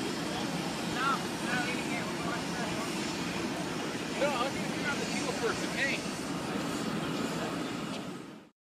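Outdoor ambience of a station crowd: scattered voices of people talking over a steady low rumble. The voices stand out briefly about a second in and again around four to six seconds in.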